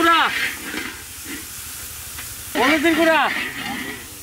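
Masala sizzling in hot oil in a large iron wok over a wood fire. A person's drawn-out vocal call sounds at the start, and another comes about two and a half seconds in.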